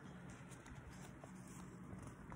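Near silence: room tone with a few faint taps.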